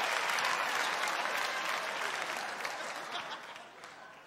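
Theatre audience applauding, a dense patter of many hands clapping that fades away over the last second.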